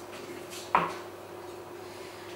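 A single short knock from a glass sugar jar being handled and opened to spoon out granulated sugar, a little under a second in. Otherwise only a faint steady hum.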